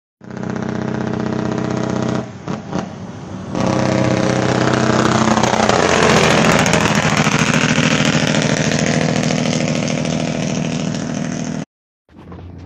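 Torton truck's diesel engine brake rattling loudly as the truck approaches and passes close by, the pitch dropping as it goes past about halfway through. The sound cuts off abruptly near the end.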